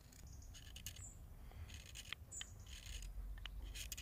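A sharp knife blade scraping a small piece of wood to smooth it: a few short, faint scraping strokes. A couple of faint high bird chirps come through as well.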